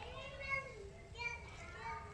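High children's voices calling and chattering off to one side, without clear words.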